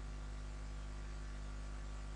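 A steady low hum with a faint even hiss: the recording's background noise, with no other sound.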